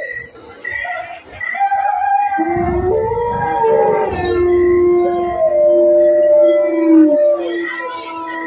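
Long, drawn-out howling from a stage dance's soundtrack played over loudspeakers. A deep low rumble sets in beneath it about two and a half seconds in.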